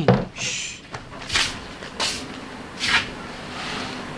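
Rummaging at a food-stall cabinet: a brief rustle, then three short, sharp clacks about two-thirds of a second apart, as of cabinet doors and containers being handled.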